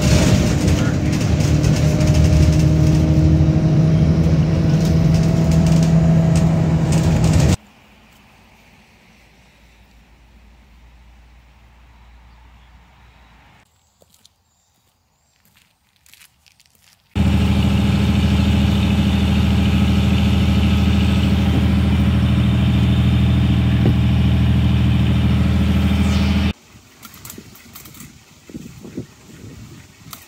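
Car driving, its engine and road noise steady and loud as heard from inside the cabin. The noise comes in two long stretches, with a much quieter gap of several seconds between them.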